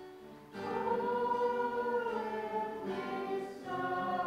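A group of voices singing a slow hymn in long held notes. A new phrase begins about half a second in after a short pause, and another starts just before the end.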